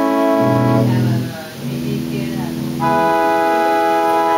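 Theatre pipe organ sounding held chords on its trumpet stop: a chord, a lower chord for about a second, then another chord held to the end.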